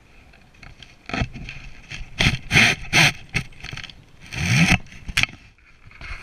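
Fly reel's clicker ratcheting in a series of short bursts as fly line is pulled off it by hand. The longest pull, about four and a half seconds in, rises in pitch as it speeds up.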